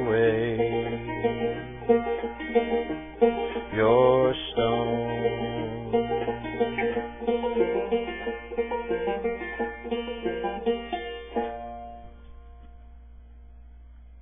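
Six-string banjo (banjitar) playing the outro of a song, with picked chords and runs. About eleven seconds in it stops on a final chord that rings out and fades away.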